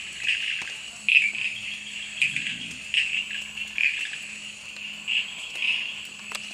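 Male Amboli bush frog (Pseudophilautus amboli) calling: a run of short, high chirping notes, about two a second, each note pulsing its vocal sac.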